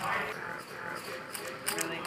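Faint, low voices murmuring in the room, with a brief spoken phrase near the end.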